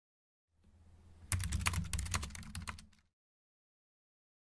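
Computer keyboard typing: a quick run of about a dozen keystrokes over a faint low rumble that starts about half a second in. It all stops about three seconds in.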